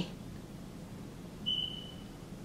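Quiet room tone with a single brief, thin, high-pitched squeak about one and a half seconds in.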